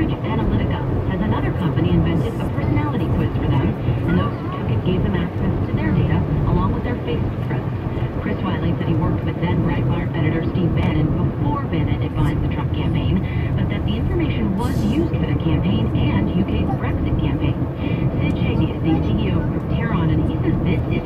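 A radio news broadcast with a talking voice, playing inside a moving car's cabin over a steady low rumble of engine and road noise.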